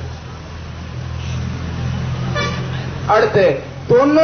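Low drone of a passing motor vehicle, swelling about a second in and fading near the three-second mark.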